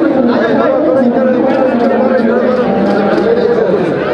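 Loud chatter of many people talking at once, voices overlapping in a large hall.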